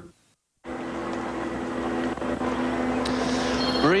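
A brief gap of silence, then a steady vehicle engine drone with a low, even hum. A man's voice starts over it near the end.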